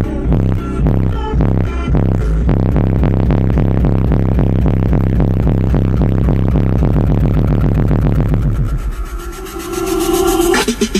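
Bass-heavy music played at very high volume through a car-audio system of six PSI 18-inch subwoofers on three HD15K amplifiers, with low bass notes pulsing in a fast rhythm. The bass drops away for about a second near the end and then comes back in.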